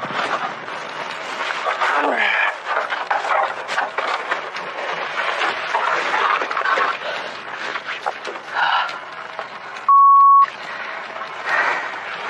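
Knocks and scraping of a heavy wooden window frame being carried down a ladder, with a man's short grunts and mutters of effort. Toward the end a steady half-second censor bleep cuts in.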